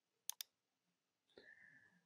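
Two quick computer mouse clicks, about a tenth of a second apart, then near silence.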